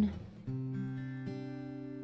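Acoustic guitar chord struck about half a second in and left ringing, fading slowly.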